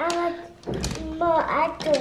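A toddler's high voice saying a few short words, once at the start and again in the second half.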